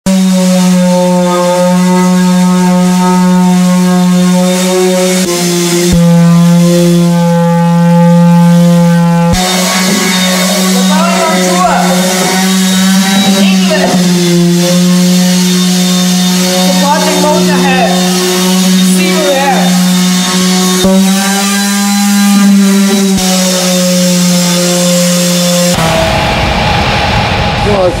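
A corded power tool's electric motor running with a steady high hum, broken by a few short cuts and stopping about two seconds before the end, with people talking over it in places.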